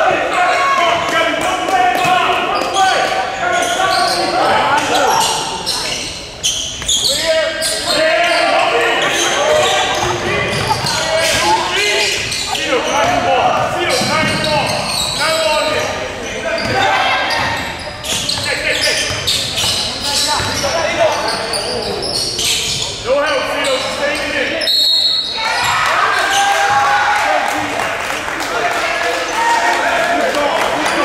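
A basketball being dribbled and bouncing on a hardwood gym floor amid players' and spectators' shouting and chatter, echoing in a large hall. Late on, a short high whistle sounds.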